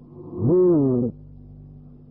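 A man's voice holds one drawn-out syllable for just under a second, its pitch rising and then falling. Under it runs a steady low hum from the old recording.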